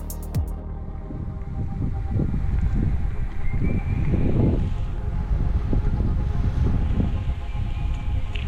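Electronic background music whose beat stops about half a second in, followed by wind buffeting the microphone in irregular low rumbling gusts.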